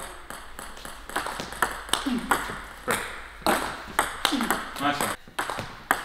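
Table tennis ball rallied back and forth: a quick run of sharp clicks as the plastic ball strikes the rubber bats and bounces on the table, a few each second, echoing in a sports hall.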